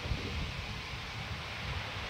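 Steady hiss with an uneven low rumble underneath: the background noise of the mission-control audio loop between flight controllers' callouts.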